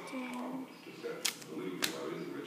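Two sharp snaps about half a second apart from duct tape being worked by hand, over television dialogue in the background.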